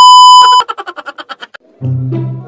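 A loud, steady test-tone beep of the kind laid over TV colour bars, which breaks off about half a second in into a fast stutter of short repeats, about ten a second, dying away over the next second. Near the end low music comes in.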